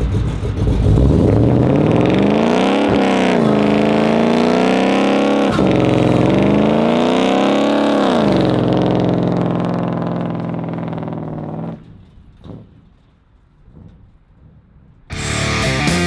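A 429 big-block Ford V8 with custom headers and a gear-drive timing set is revved hard in three rising pulls during a burnout, with the rear tyres spinning in thick smoke. It then holds high revs before cutting off abruptly about twelve seconds in. Rock music with electric guitar starts near the end.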